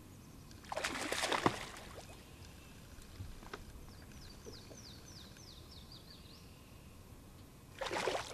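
Quiet open-air ambience from a boat on a lake: a brief rush of noise about a second in and another near the end, and in the background a run of about ten quick, high chirps, each falling in pitch.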